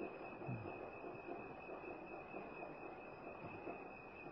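Faint steady background hiss of an old talk recording, with a thin high-pitched whine running through it and a brief faint low sound about half a second in.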